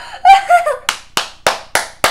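A boy's excited squeal, then rapid hand clapping starting about a second in, about four claps a second, in celebration.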